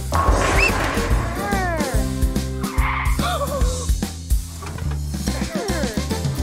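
Upbeat children's cartoon music with a steady bass line, and a clattering crash right at the start as a tower of toy blocks tumbles down. Short sliding cartoon vocal sounds follow over the music.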